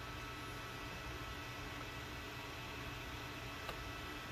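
Quiet, steady room tone: a low even hiss with faint steady whine tones, and one small click near the end.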